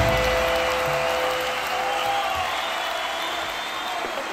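The last chord of a rock song ringing out and slowly fading through electric guitar amplifiers, with applause over it.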